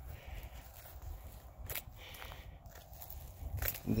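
Footsteps on grass, a few soft steps with a couple of sharper ticks, over a low steady rumble.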